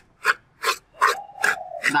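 Wooden chopsticks stirring dry chopped herb leaves in a metal pan, a scraping rustle in regular strokes, about two or three a second, as the poultice leaves are dry-roasted.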